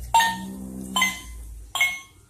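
Singing birthday cake toy giving three short electronic chime tones, each ringing out and fading, about a second apart, as its light-up candle buttons are pressed.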